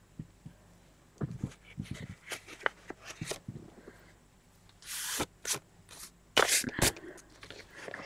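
Handling noise from hands working at a paper page: scattered small taps and clicks, with two brief scratchy rustles about five and six and a half seconds in.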